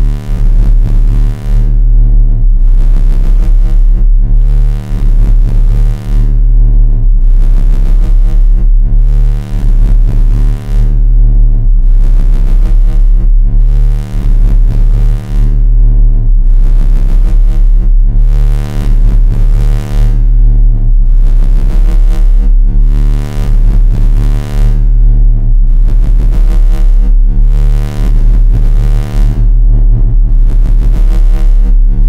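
Live-coded electronic music: layered low synthesizer tones from sine, triangle and square waves on bass notes around C2 to D#2, sustained and overlapping, very heavy in the bass. The texture pulses in a slow repeating cycle of about four to five seconds.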